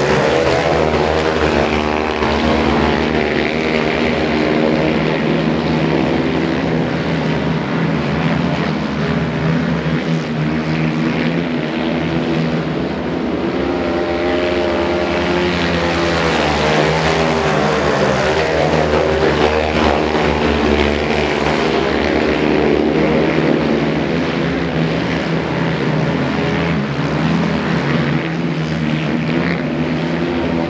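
Four racing quad bikes' engines running hard together on a dirt speedway track, a continuous loud engine din whose pitch keeps rising and falling as the riders throttle on and off.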